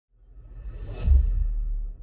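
Intro logo sting: a whoosh swells up to about a second in and lands on a deep low boom that holds, then begins to fade near the end.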